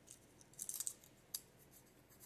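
Faint crinkling ticks of a small folded paper slip being handled and unfolded by hand: a short cluster about half a second in and a single tick a little later.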